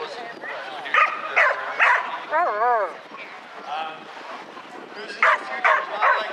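A dog barking: three sharp barks about a second in, then a wavering whine, then three more quick barks near the end.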